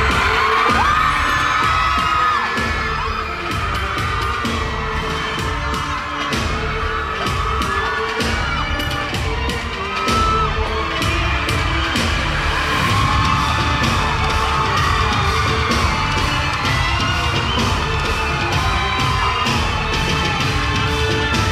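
Loud live K-pop concert music over a PA system with a steady driving beat, and fans in the audience screaming over it throughout.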